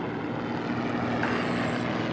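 Aeroplane flying overhead: a steady engine drone with a low, even hum.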